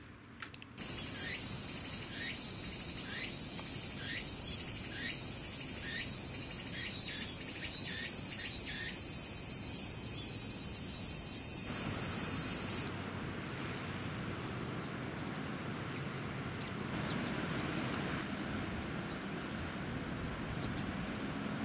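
A dense, high-pitched chorus of cicadas buzzing steadily. It starts about a second in and cuts off suddenly near thirteen seconds, with a run of short falling chirps beneath it through the first half. After the cut, a much quieter steady outdoor rushing noise carries on.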